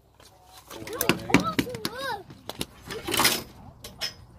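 Excited human voices exclaiming without clear words, in rising-and-falling calls about a second in, with a short hissing burst near the end and a few sharp clicks and knocks between.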